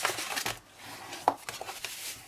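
Scored cardstock being folded along its score lines and pressed flat with a bone folder: rustling paper rubs with a few sharp taps, the loudest about a second and a quarter in.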